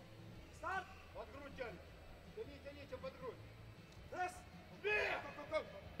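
Faint voices speaking in short phrases, several times, over a low steady hum; no clear clank of bar or plates stands out.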